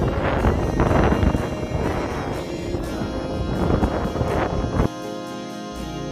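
Wind buffeting the microphone over background music; the wind noise cuts off suddenly near the end, leaving the music on its own.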